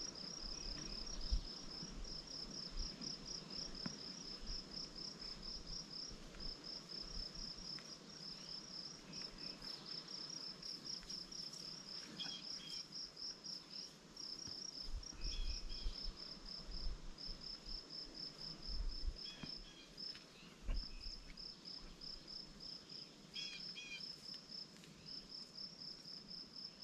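Faint insect chirping in rapid, even pulses, running without a break, with a few brief fainter chirps now and then.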